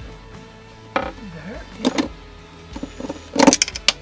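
Cordless drill-driver working screws into a socket back box, in short bursts with clicks, the loudest burst about three and a half seconds in, over background music.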